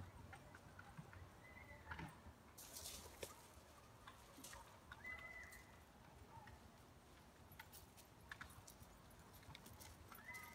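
Near silence: faint outdoor background with two short, high chirps and a few scattered light clicks.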